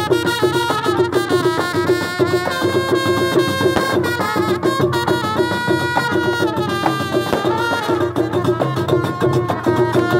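Street band music: two trumpets play a stepping melody over a steady drum beat, with the dense metal clacking of karkabou (iron castanets) running through it.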